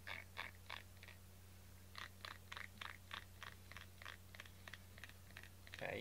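Pink silicone grooming brush making short scratchy rubbing strokes, in a quick run of four, then a steady train of about three a second.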